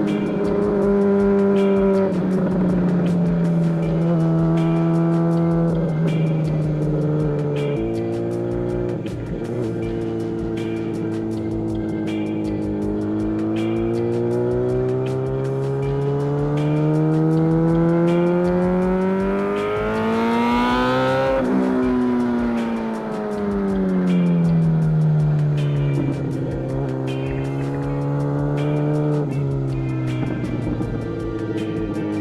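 A 2017 MV Agusta F4 RR's inline-four engine running through an aftermarket SC Project exhaust under way. The engine note eases slightly, steps at a shift about eight seconds in, then climbs steadily for about thirteen seconds. It falls away quickly around the three-quarter mark and then holds steady.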